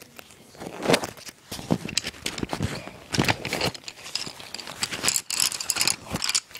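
Close handling noise: a clear plastic pencil pouch crinkling and colored pencils clicking against each other as they are worked out by hand, in irregular bursts of clicks and rustles, loudest about a second in and again through the middle.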